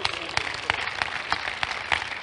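Scattered hand clapping from a congregation, irregular sharp claps over a low hum of the room.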